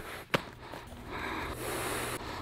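Wooden mallet striking the leather pocket of a baseball glove, a sharp knock at the very start and another about a third of a second in, as the glove is broken in. A soft hiss follows from about a second in.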